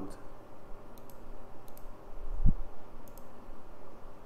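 Computer mouse clicking three times, each click a quick pair of ticks, with a single low thump about halfway through over a faint steady hum.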